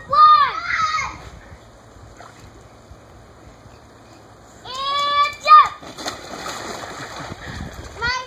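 A child shouts, and after a quiet stretch another high shout comes just before a splash, about five and a half seconds in, as a child with an inflatable ring jumps into an inflatable above-ground pool. Water sloshes and churns for the rest of the time.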